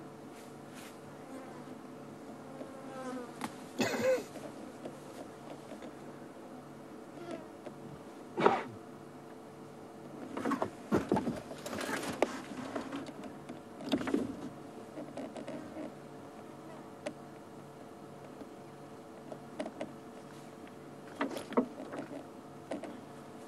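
Lionesses at a buffalo carcass giving short growls and snarls as they feed. The loudest comes about eight seconds in, with a busier stretch around eleven to twelve seconds. A steady buzz runs underneath.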